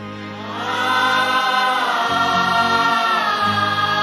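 Music from a worship song's introduction: sustained, wordless choir-like voices swell in about half a second in and hold over a steady bass line.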